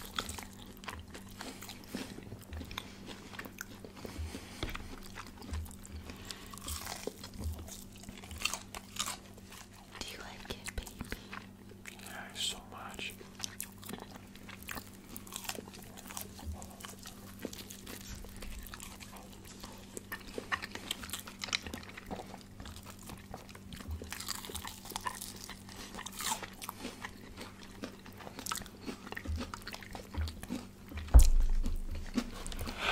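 Close-miked crunching and chewing of crispy KFC fried chicken: irregular crackly bites of the breaded coating and wet chewing from two people eating, over a steady low hum.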